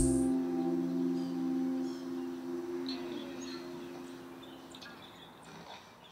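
The band's last chord ringing out and slowly fading away to nothing, with faint bird chirps over the tail.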